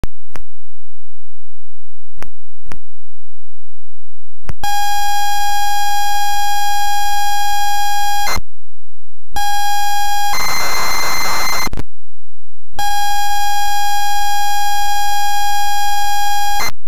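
ZX Spectrum tape-loading signal, very loud. A few sharp clicks come first, then a steady high pilot tone for about four seconds. After a short gap the tone returns, breaks into about a second and a half of harsh data screech, and after a pause the steady tone starts again.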